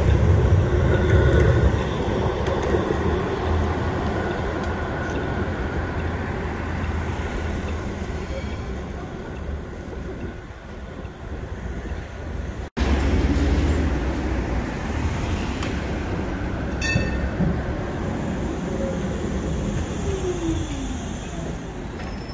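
Siemens Combino low-floor tram running past on street track with road traffic, its rumble fading away over several seconds. After a break, another tram's running noise rises again, with a motor tone that falls in pitch near the end as it slows.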